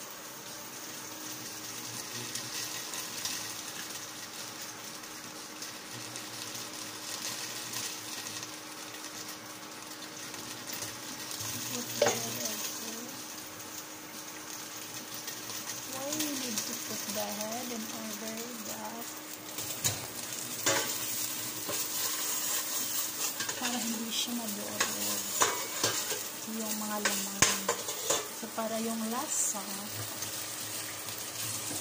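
Thick tom yum paste sizzling in a stainless steel pot, with a steady hiss. In the second half come sharp knocks and clinks as the ladle works the pot and shrimp go in.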